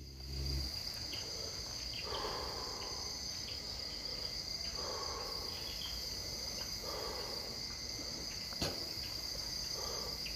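Crickets trilling in a steady, high-pitched, unbroken drone. A few faint, muffled sounds come about two, five and seven seconds in, and a single sharp click comes near the end.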